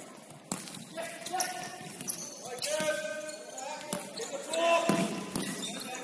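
Futsal ball being kicked and bouncing on a wooden sports-hall floor, a series of sharp knocks, mixed with players' shouts echoing in the large hall.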